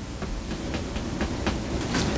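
Low, steady rumble of room background noise with a few faint clicks, growing slightly louder toward the end.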